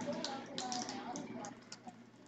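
Light clicks and taps from cups and fittings being handled at a kitchen sink, with a faint voice in the first second.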